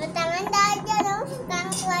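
A young girl's high-pitched sing-song voice in two drawn-out, wavering phrases, the second running into a few words.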